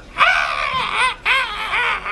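A very high-pitched wailing, crying-like voice in two long wavering cries that bend up and down in pitch, broken by a short gap about a second in.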